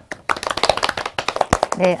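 A few people clapping briefly, a quick run of sharp claps, with one heavier thump about one and a half seconds in.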